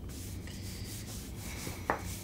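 A hand brushing and rubbing across the front of a cotton T-shirt in several soft strokes, wiping off spilled drink. A short click comes just before the end.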